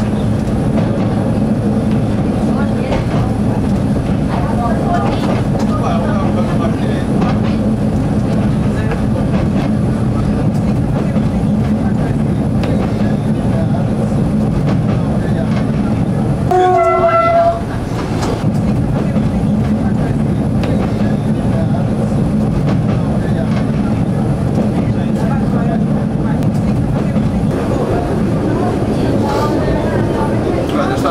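Diesel railcar of the CP 9500 series heard from its front cab, its engine running with a steady drone as it rolls over station tracks and points with wheel clatter. About sixteen seconds in, the horn sounds once for about a second.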